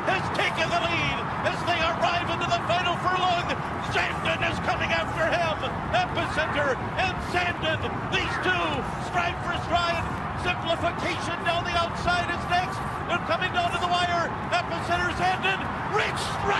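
Many excited voices shouting over one another, with a horse-race call in the mix, without a break.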